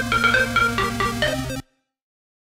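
Electronic music played back from a MIDI pattern rendered to an audio clip: a quick stepping synth melody over a bass line and a steady beat. It cuts off abruptly about one and a half seconds in, leaving dead silence.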